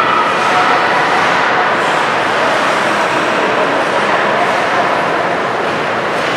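Steady ambience of an indoor ice rink during a hockey game: a loud, even, continuous noise with no distinct hits or calls.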